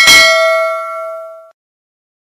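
A single bell-like ding sound effect, struck once and ringing, cut off abruptly about one and a half seconds in.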